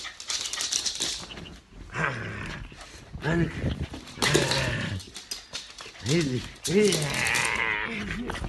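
Small dog giving several short, arched barks and growls as it lunges at a dangled shoe, with scuffling and rustling throughout.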